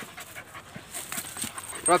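Rottweiler puppy panting, with a voice calling "Roxy" at the very end.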